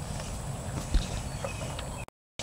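Cattle feeding on cattle cubes on a concrete slab: faint scattered crunching, hoof scuffs and clicks, with one low knock about a second in.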